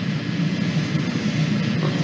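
Steady low hum with hiss, the background noise of an old lecture recording, in a pause between a man's spoken phrases.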